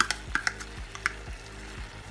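A spoon scraping chili sauce out of a plastic measuring cup into a pan of sauce, making a series of light, irregular clicks and taps.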